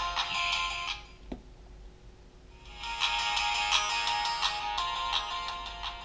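Music playing through a smartphone's small built-in speaker, thin with hardly any bass. It drops out about a second in, with a single click in the gap, and comes back at about the three-second mark.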